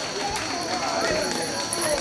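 Indistinct voices of people talking over one another, with a steady high-pitched whine underneath.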